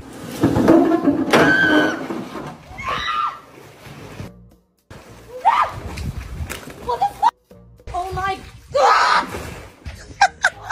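Voices shouting in bursts over background music, with water splashing partway through.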